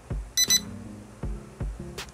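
A quick double electronic beep, high and thin, as the key-function button on the SG701 drone's remote is long-pressed to start video recording. Soft background music underneath.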